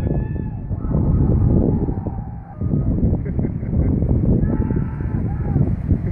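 Wind buffeting the microphone, with a person's drawn-out, wavering yells over it: a short one at the start, a longer one from about one to two seconds in, and another about four and a half seconds in.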